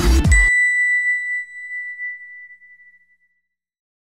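An electronic music bed that cuts off half a second in, followed by a single bright chime that rings out and fades away over about three seconds: the sound of an outro logo sting.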